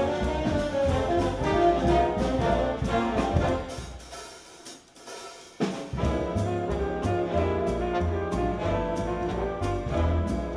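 Jazz big band playing, with the trombone and trumpet sections over bass and drums. The band drops away about three and a half seconds in to a short quiet pause, then comes back in together sharply just before the six-second mark.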